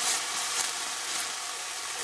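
Minced garlic sizzling steadily in hot oil in an enamelled pan, being stirred with a spatula. The heat has been turned down so the garlic cooks lightly without burning.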